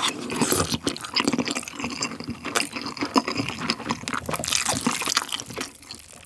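Close-miked chewing of a mouthful of Bibigo king dumpling: a dense run of small wet clicks and smacks that dies down just before the end.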